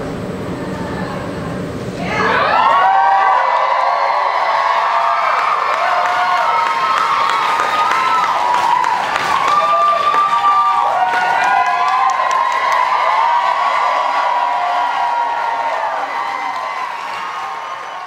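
A theatre audience cheering, whooping and clapping. The cheering breaks out suddenly about two seconds in as the music stops, then stays loud and eases off near the end.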